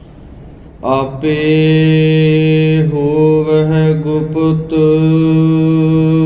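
A man chanting in long, drawn-out notes that start about a second in and hold a nearly steady low pitch, with a few small dips and wavers.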